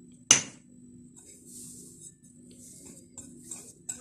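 A single sharp clink of something hard against the china bowl about a third of a second in, then a wire whisk stirring dry flour, baking powder and salt in the bowl with soft, repeated scraping.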